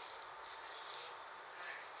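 Faint rustling as fashion dolls are handled and laid on fabric bedding, with a couple of small ticks over a low steady hiss.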